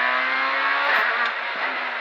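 Proton Satria S2000 rally car's naturally aspirated two-litre four-cylinder engine, heard from inside the cabin, running on a steady note, with one sharp click about a second in.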